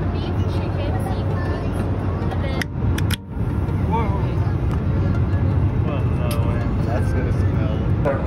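Airliner cabin noise in flight aboard an Airbus A321: a steady low drone with faint voices in the background. The sound briefly drops out about three seconds in.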